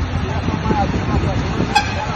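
Motorcycle engine running as the bike rides along a flooded street, with a low steady rumble. A brief sharp beep sounds near the end.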